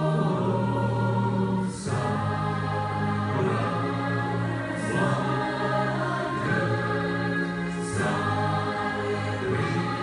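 Large choir singing with a full orchestra: slow, held chords that change about every three seconds.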